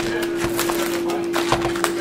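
A stack of trading cards being handled and flipped through in the hands, giving many small clicks and rustles, over a steady low hum.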